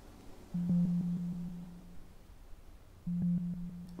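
A low, held musical drone from a suspense film score, one steady note that swells in about half a second in, fades, and returns near the end.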